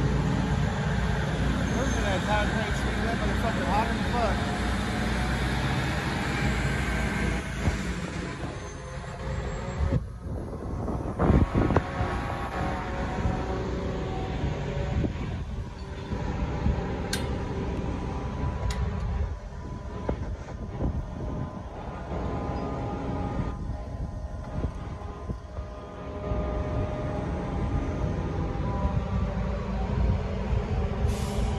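Steady low rumble of a crane at work hoisting a lattice tower-crane mast section, with wind buffeting the microphone and faint voices in the background. There is a louder patch about a third of the way in.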